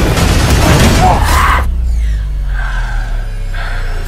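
Movie-trailer sound design: loud, dense music with impact hits that cuts off suddenly about a second and a half in. It leaves a low bass boom that slowly fades, with a few faint high tones over it.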